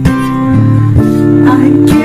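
Acoustic guitar strummed, its chords ringing on between strokes at the start, about a second in and near the end, with a man singing over it in a pop mashup cover.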